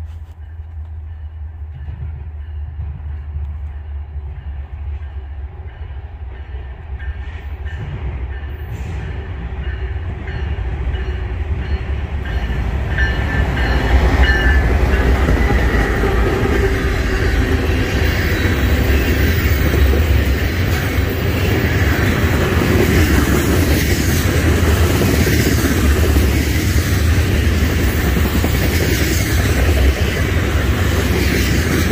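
Freight train with diesel locomotives approaching and growing steadily louder, reaching full loudness as the locomotives pass about halfway through. After that comes the steady rolling rumble and clatter of a long string of tank cars going by.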